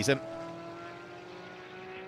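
GT race cars' engines running on the circuit, heard as a steady drone that sags slightly in pitch over about two seconds.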